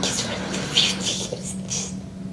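A man on a ventilator speaking in a breathy, hushed voice, in short irregular phrases, over a steady low hum.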